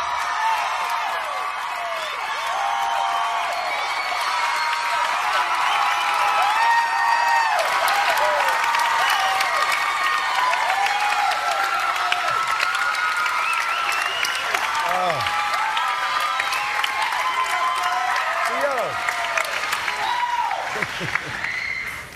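Large studio audience cheering and applauding, with many high shouts and whoops over steady clapping. The clapping grows denser several seconds in.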